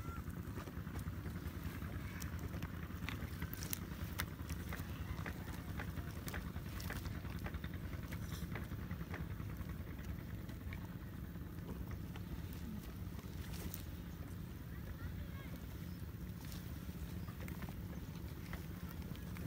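Two Komodo dragons tearing at a goat carcass in dry brush: scattered sharp crackles and snaps over a steady low rumble.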